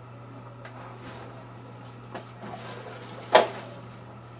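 Light handling sounds with faint knocks and rustles at a metal locker, and one sharp clack a little past three seconds in.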